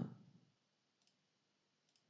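Near silence with two faint computer-mouse clicks, one about a second in and one near the end.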